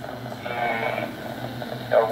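A man's voice coming over a VHF amateur-radio transceiver's speaker, muffled and hard to make out, over a steady low hum.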